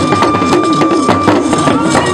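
Hourglass talking drums (lunga) beaten with curved sticks in rapid strokes, with voices singing over them and a steady high note held above.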